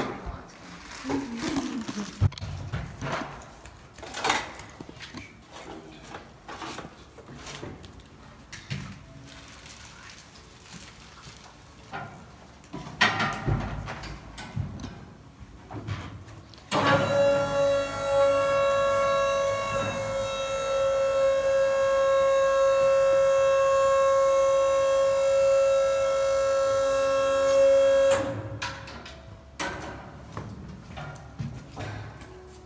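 Scattered knocks and clatter of handling on a metal work platform, then an electric lift motor starts about seventeen seconds in. It runs with a steady whine for about eleven seconds as it raises the platform, and cuts off abruptly.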